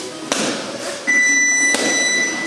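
A few sharp smacks, like punches landing on focus mitts. About a second in, a steady, high electronic beep starts, the loudest sound here, and holds on past a second: a boxing gym round timer sounding.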